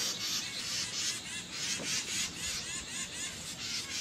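A mixed flock of songbirds (chickadees, titmice, wrens and blue jays) scolding all at once, a dense overlapping chatter of short, high chirps. It is a mobbing chorus, the alarm small birds raise when something has disturbed them in a tree.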